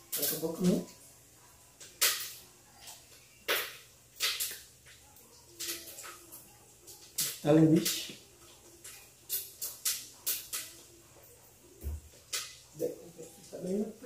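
Bacon frying in a pan: irregular sharp pops and crackles of spattering fat.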